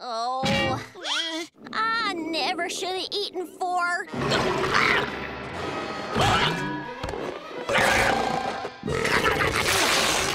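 A cartoon voice screams and wails in a wavering, trembling pitch for about four seconds. Then come strained growls and grunts over dense, noisy cartoon transformation effects, with loud surges, and background music.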